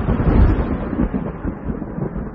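Thunder rumbling, deep and heavy, slowly dying away.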